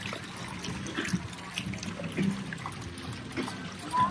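Fountain water jets spouting and splashing into a pool, a steady trickle of falling water.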